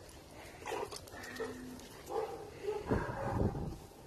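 Two dogs play-fighting and making short vocal noises, loudest about three seconds in.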